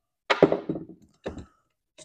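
Metal accelerator pedal parts knocked and set down on a wooden workbench: a quick cluster of thunks about a third of a second in, then a lighter knock a second later.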